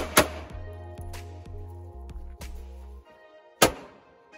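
Pistol shots from a Sig XL carry pistol over background music: two quick shots at the start and another loud shot near the end, after the music drops out.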